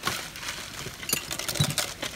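Ceramic figurines and other small objects clinking and knocking against each other in a cardboard box as hands dig through them and lift out a wooden box. A string of sharp clinks, the brightest a little past a second in, with knocks in the second half.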